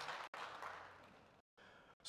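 An audience applauding, the clapping dying away and fading to near silence about a second and a half in.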